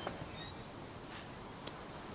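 Quiet outdoor background: a steady faint hiss, with a couple of faint small ticks in the middle.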